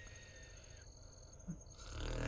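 Quiet background: faint hiss with steady high-pitched electronic tones, a thin tone that fades out in the first half second, and one soft, brief sound about one and a half seconds in.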